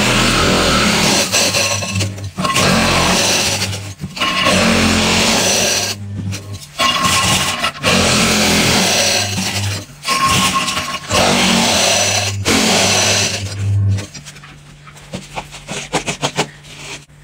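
Fine crushed ice in a metal bowl, scraped and crunched in a run of loud, rough bursts of one to two seconds each with short gaps, stopping about two seconds before the end.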